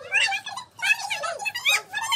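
Children's high-pitched, excited voices calling out in short bursts that bend up and down in pitch, with no clear words.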